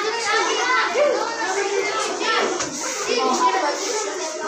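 A classroom full of children chattering at once: many overlapping young voices, with no one voice standing out.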